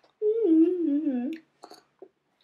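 A girl humming a short, wavering tune for about a second, followed by a couple of faint clicks near the end.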